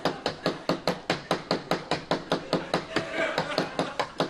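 Homemade 'stress machine' gadget being pounded by a fist on a desk: rapid, even knocking at about five or six blows a second.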